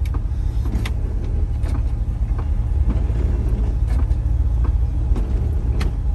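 Chevrolet 350 small-block V8 idling steadily, heard from inside the cab, with light clicks about once a second as the windshield wipers run.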